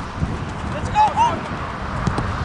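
Two short shouted calls from voices on a football pitch about a second in, over a steady low rumble of wind on the microphone.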